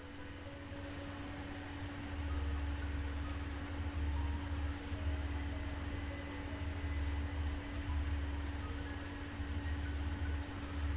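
Steady low hum with a faint higher steady tone and hiss: background noise on a voice-over microphone, with a couple of faint ticks.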